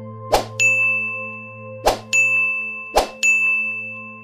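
Animation sound effects for pop-up subscribe buttons: three short pops, each followed a moment later by a bright bell-like ding that rings on. The dings come about half a second in, just after two seconds and just after three seconds, over a faint steady low drone.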